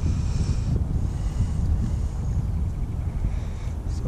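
Wind buffeting the microphone: a steady low rumble with a faint hiss above it.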